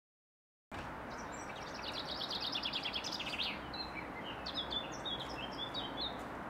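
Songbirds singing over a steady outdoor background hum: a fast run of repeated high notes from about two seconds in, then scattered separate chirps near the end. The sound starts after a brief moment of silence.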